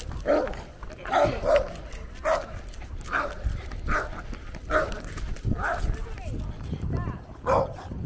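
A dog barking repeatedly in short yelps, about once a second.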